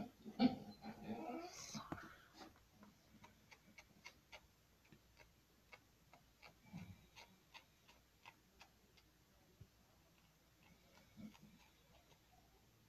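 Felt-tip marker tip dabbing and scratching on a foam squishy: faint, quick, irregular clicks, several a second, after a brief murmur about a second in.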